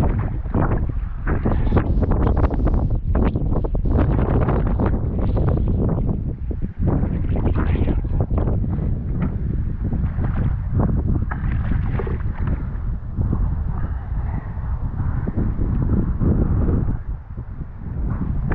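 Strong wind buffeting an action camera's microphone in irregular gusts, a heavy rumble with crackling bursts.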